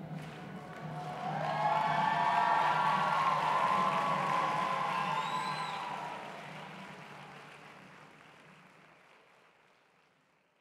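Concert audience applauding and cheering at the end of a brass band performance. It swells about a second and a half in, then fades away toward the end.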